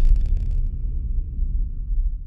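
Deep rumbling sound effect of an animated logo sting, slowly fading.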